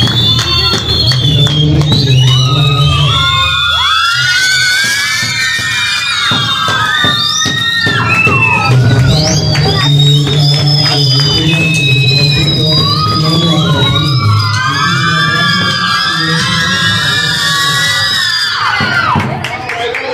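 A crowd of children cheering and shouting in high voices, with beats on a bombo drum underneath. The shouting eases off near the end.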